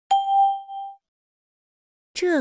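A single bell-like chime (ding) struck once and dying away within about a second. It is a cue tone between spoken lines of a recorded Chinese listening exercise.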